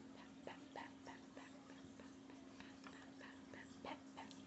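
A dog whimpering faintly in short, soft whines, with light clicks and taps close to the microphone over a steady low hum.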